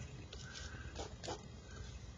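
Pen writing on paper: a few short, faint scratching strokes.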